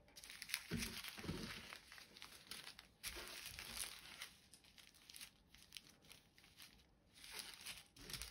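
Small plastic zip-lock bags of diamond-painting drills crinkling as they are handled and moved about on a table, busiest in the first four seconds, with a couple of soft thuds about a second in.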